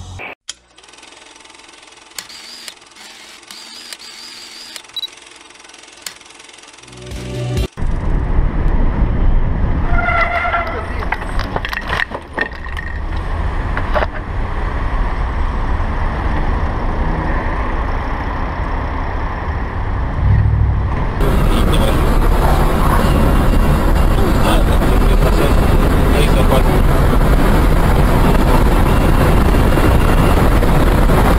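Road and wind noise from cameras mounted on moving vehicles: quiet for the first quarter, then loud and steady, turning to a brighter hiss about two-thirds of the way through.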